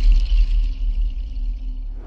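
Tail of a channel ident jingle: a deep bass rumble that fades away, with a faint high shimmer over it in the first second.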